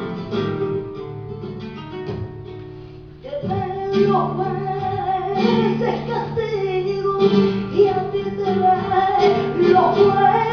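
Flamenco acoustic guitar, its notes dying away over the first few seconds. About three seconds in a woman's voice comes in singing a long, wavering, ornamented line over the guitar.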